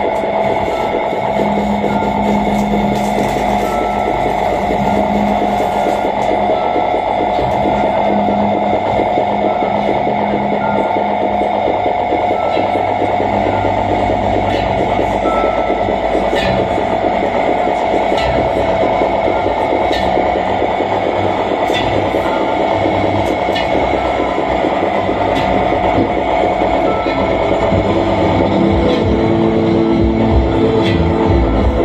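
Live electronic noise music: a dense, steady drone of layered held tones, with a low hum that drops out about twelve seconds in and scattered sharp clicks throughout.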